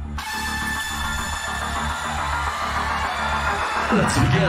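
Electronic music: a dense, bright synth build-up over a steady low bass pulse, getting gradually louder.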